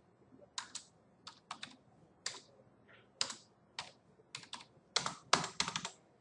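Computer keyboard keys clicking irregularly as a value is typed in, with a quicker run of keystrokes in the last second and a half.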